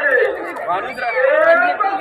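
Speech: a voice talking, with other voices chattering.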